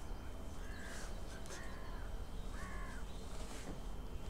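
Three short, harsh bird calls, each rising and falling in pitch, about a second apart, over a low steady hum.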